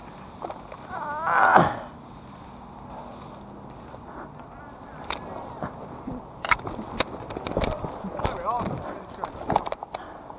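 Footsteps, rattling gear and brushing foliage as a player in kit moves quickly along a wooded trench, with a string of sharp knocks and clicks in the second half. A brief voice sound comes about a second and a half in.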